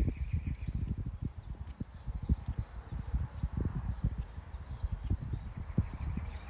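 Wind buffeting the microphone: irregular low rumbling thumps and gusts.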